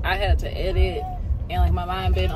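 A woman's voice over the steady low rumble of a car, heard from inside the cabin.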